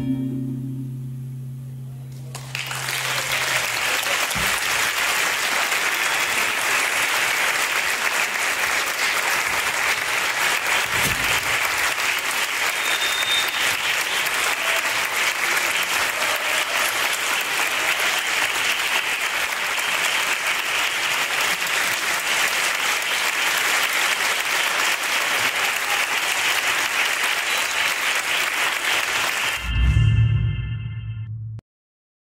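Audience applauding steadily. The applause begins about two seconds in, as the last held notes of acoustic guitar and voice die away, and runs on until nearly the end.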